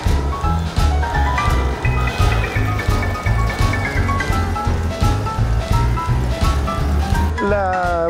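Background music with a steady beat and a bass line. A man's voice comes in near the end.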